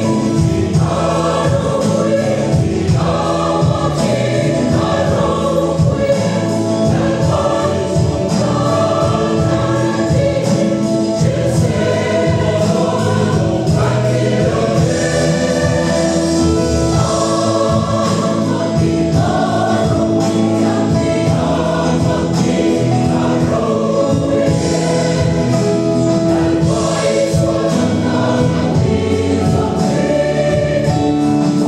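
A large mixed choir of women's and men's voices singing a hymn together, steadily and without a break.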